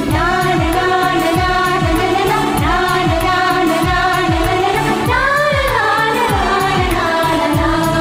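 Background song in an Indian film-music style: a singer over a steady beat of deep, falling kick drums and evenly ticking hi-hats.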